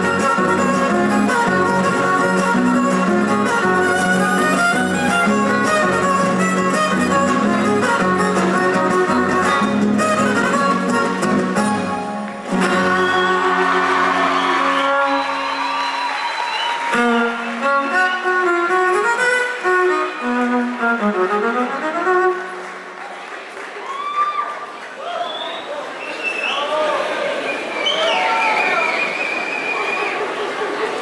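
Son huasteco played by a huasteco trio, violin over strummed guitars. About twelve seconds in, the low strummed accompaniment drops out and melodic runs carry on alone. In the last several seconds the audience applauds and calls out.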